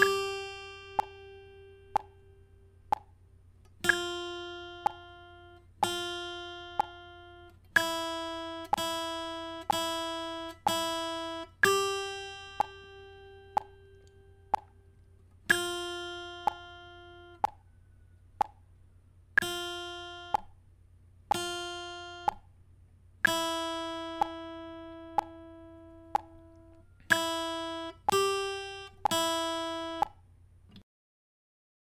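Acoustic guitar playing a slow beginner's single-note exercise, one plucked note at a time. Some notes ring for about four beats and others for two or one, over a steady metronome click about once a second.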